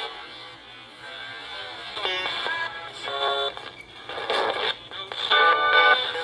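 Handheld digital radio scanning through FM stations, used as a spirit box: after a moment of quieter static it throws out brief chopped snatches of music and voices, about one a second, thin through its small speaker.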